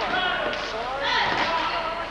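Voices calling and shouting in a gym during a basketball game, with the ball bouncing on the wooden court.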